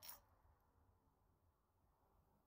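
A single brief, faint click right at the start as the homemade coil gun is triggered, its steel rod projectile snapping into the centre of the coil; otherwise near silence.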